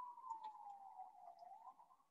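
Near silence with a faint distant siren: one pure wailing tone that slowly falls in pitch and rises again near the end. A few soft clicks come about half a second in.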